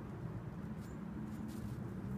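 A Schipperke dog rolling and rubbing itself in snow: a few faint soft scuffs over a steady low hum.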